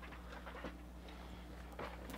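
Faint, steady low electrical buzz in the phone-microphone audio: a low hum with a few fainter higher tones above it, with a few faint short noises. It is interference that the video traces to the phone being on its charger rather than on battery.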